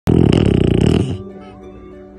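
A French bulldog puppy gives one loud, rattling snore about a second long, over background music with held notes that carry on after the snore stops.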